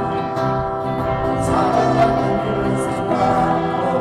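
Live acoustic folk music: a man singing with his own acoustic guitar, amplified through a PA, the voice holding long sung notes.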